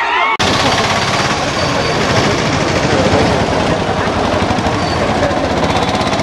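A string of firecrackers going off in a fast, continuous crackle that starts abruptly about half a second in, with crowd voices underneath.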